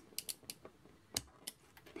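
A handful of small, sharp clicks and taps as fingers handle an Arduino board with a prototype shield fitted, plastic headers and circuit board knocking lightly; the loudest comes about a second in.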